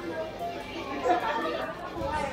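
Indistinct chatter of several people talking in a room.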